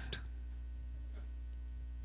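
Steady low electrical mains hum in the microphone's sound system, with the tail of a man's spoken word dying away at the very start.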